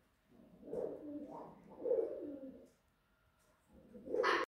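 White cockatoo giving two low, pitched calls, about a second each, one after the other, with another beginning right at the end; the bird is presented as very angry.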